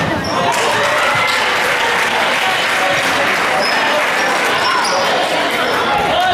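Basketball game in a gym: a basketball dribbled on the hardwood floor, with sneakers squeaking and a hubbub of players' and spectators' voices that swells about half a second in.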